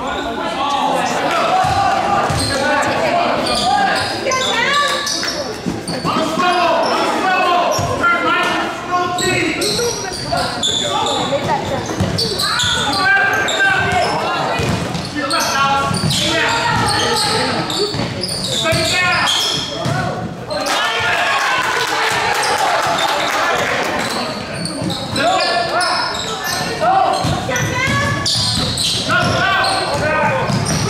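Basketball bouncing on a hardwood gym floor during live play, among players' and spectators' voices and shouts, echoing in the hall.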